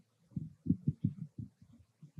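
Handling noise from a handheld microphone being picked up and raised: an irregular run of dull, low thumps over about a second.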